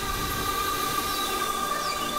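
Experimental synthesizer drone music: several steady held tones, one standing out above the rest, over a rough, noisy wash.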